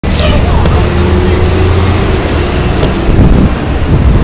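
Busy city street traffic with wind buffeting the microphone: a loud, low rumble with passing vehicles.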